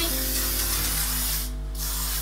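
Aerosol hairspray can spraying onto hair in a long hiss, which breaks off about one and a half seconds in and starts again for a second short burst near the end.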